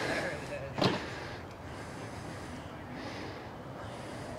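Faint outdoor background noise with one short, sharp sound about a second in.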